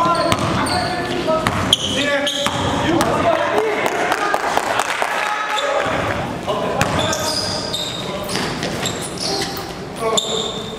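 Live game sound of an indoor basketball game: a ball dribbled and bouncing on the gym floor with sharp repeated bangs, sneakers squeaking, and players' voices calling out. All of it echoes in the large hall.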